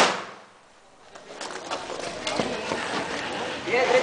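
The tail of a handgun shot fading out within about half a second. Then no more shots, only scattered small knocks and voices.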